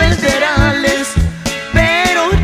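Norteño band music: accordion melody with quick slides and ornaments over bass and drums in a steady bouncing two-beat rhythm.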